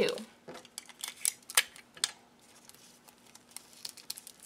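Strips of brown kraft paper being twisted together by hand: a few sharp crinkles and rustles in the first two seconds, then fainter, sparser rustling.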